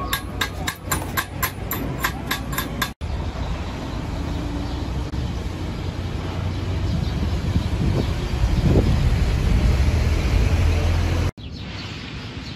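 Sharp, evenly spaced taps, about four a second, for about three seconds. Then a steady low rumbling noise that grows louder and cuts off abruptly near the end.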